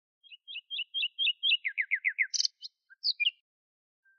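A songbird singing one phrase: a run of about eight quick, evenly spaced high chirps, then five quick descending notes, then a short burst and a few final notes, ending about three and a half seconds in.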